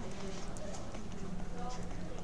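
A few light ticks of a stylus tapping on a drawing tablet while words are handwritten, over a low steady background hum.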